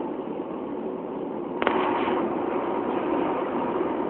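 Steady noise inside a car's cabin, with a single sharp click about a second and a half in.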